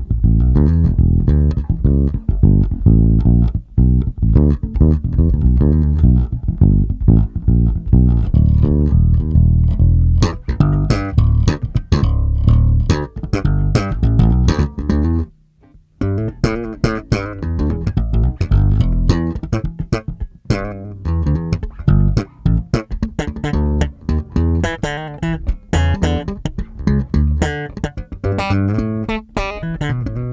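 Electric bass played through the Zoom MS-60B's Eden amp model with no cabinet simulation: a run of plucked low notes. The notes stop briefly about halfway through, then the playing turns busier and brighter, with sharp attacks.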